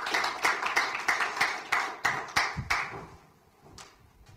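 Audience applauding, the clapping dying away about three seconds in, followed by a faint knock near the end.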